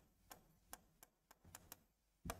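Near silence with a few faint, irregular clicks: a marker tapping and stroking on a whiteboard as a formula is written.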